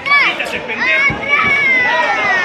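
Children in a crowd shouting and cheering in high-pitched voices, calls rising and falling in pitch, with one long call sliding down in the second half.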